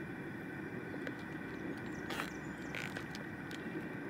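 Plastic freezer bag and zip tie being handled, with two brief crinkles a little past the middle, over a steady low background rumble.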